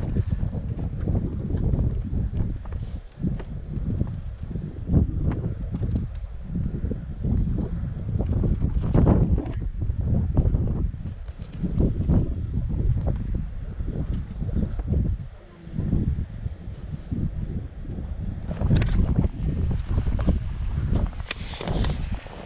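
Wind buffeting the camera's microphone: a gusty low rumble that swells and drops throughout.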